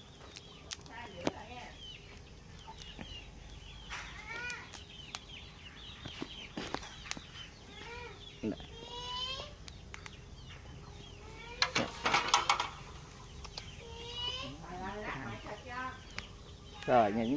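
Domestic chickens clucking now and then in short calls. About twelve seconds in there is a quick rattle of clicks, likely the wire grill rack being set over the charcoal pot.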